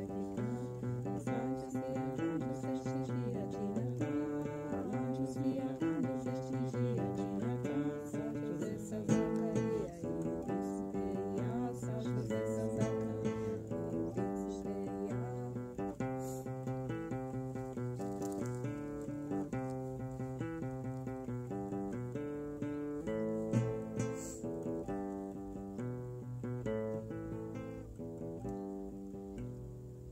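Acoustic music played on a plucked string instrument, a run of picked notes and chords that gradually fades out over the last few seconds.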